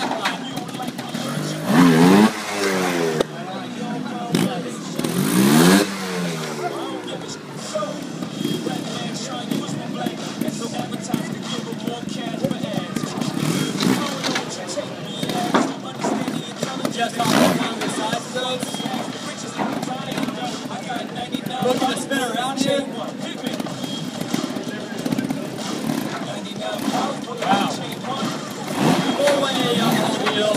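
Trials motorcycle engine revved in two sharp blips, about two and five seconds in, with lighter revving and talk in the background for the rest.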